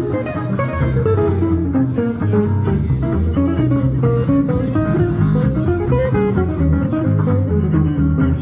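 Gypsy jazz (jazz manouche) played by a trio of two acoustic guitars and an upright double bass: a guitar runs a quick single-note melody over the rhythm guitar and the steady bass notes.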